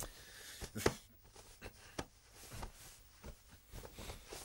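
Bedclothes rustling, with soft irregular knocks and shuffles, as a person tosses and turns in bed and tugs at the covers.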